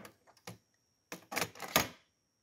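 Plastic clicks and clatter from loading a Pioneer CT-939MKII cassette deck: a sharp click near the start as the cassette door opens, another about half a second in, then a quick run of clicks in the second half as a cassette is handled into the door holder.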